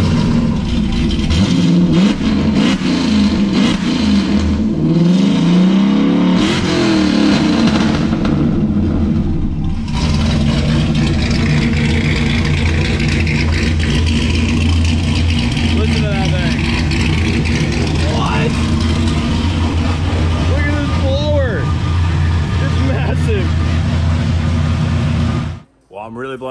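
Dodge Challenger Hellcat's 6.2-liter Hemi V8, with a 4.5-liter Whipple supercharger and long-tube headers, running just after a push-button start on a Holley Dominator ECU. It is revved up and down several times in the first eight seconds, then settles into a steady, loud idle.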